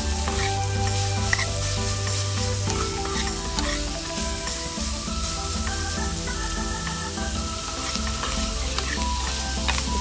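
Minced pork and julienned ginger sizzling in a nonstick wok as a metal spatula stirs and scrapes through it, with background music playing underneath.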